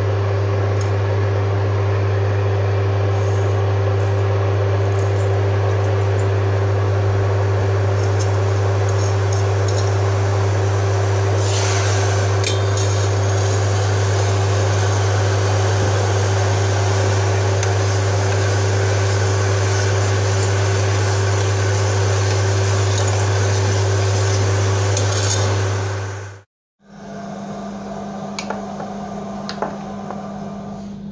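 Induction cooktop running under a steel saucepan of water, pandan leaves and palm sugar: a loud, steady electrical hum with fan noise. It cuts off suddenly about four seconds before the end, and a quieter, lower-pitched steady hum follows.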